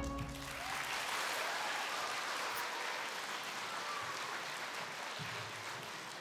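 Audience applauding in a school theatre, with the last sung chord of the song dying away at the start. The applause slowly fades.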